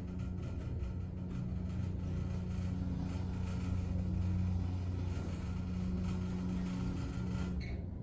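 Westinghouse hydraulic elevator running, heard from inside the car: a steady low hum with two held tones. The higher of the two tones drops out right at the end.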